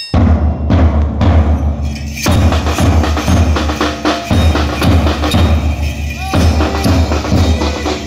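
School marching band drums playing a steady beat: a big bass drum thumping low under sharper, quicker drum strokes.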